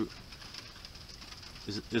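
A man's voice trailing off, then a pause of about a second and a half with only faint steady background noise, then his voice starting again near the end.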